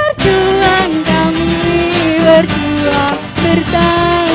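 A live band playing: acoustic guitars, electric bass, keyboard and conga drum, with a held melody line that steps between notes over the strummed accompaniment.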